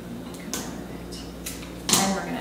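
Flower stems being handled and tucked into a floral arrangement: a few short rustles and clicks, with a louder knock near the end.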